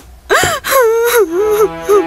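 A woman's sharp gasping cry, then a long wavering wail that slides down and holds. A steady held musical tone comes in underneath about halfway through.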